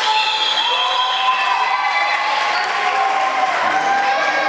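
Several voices shouting in long, drawn-out calls that overlap, echoing in a large hall.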